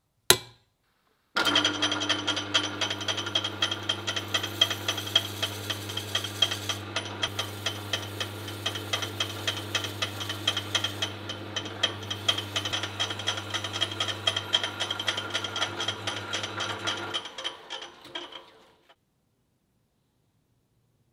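A single sharp click, then a bench drill press motor runs with a steady hum while its bit drills into the end of a wooden handle, with a fast, dense rattle over the hum. Near the end the motor shuts off and winds down over a couple of seconds.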